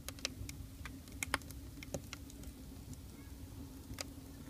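Wood fire crackling in a wood-fired pizza oven: irregular sharp pops over a low rumble.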